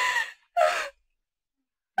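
A person's voice making two short sighing or gasping sounds in the first second, then about a second of silence.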